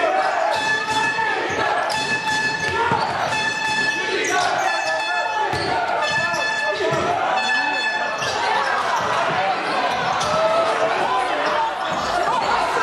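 Basketball game in a gym: a ball bouncing repeatedly on the court amid voices of players and crowd echoing in the hall, with short high tones now and then.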